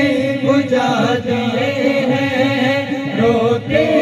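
Men's voices singing a naat through microphones, with no instruments: a lead voice sings a bending melodic line over backing voices holding a steady low sustained tone.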